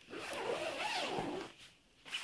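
Zip on a fabric carrier bag being pulled open: one rasping run lasting just over a second, then stopping.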